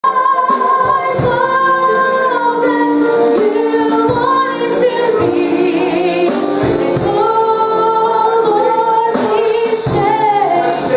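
Live worship music with a woman singing long held notes over a band, with scattered drum and cymbal hits.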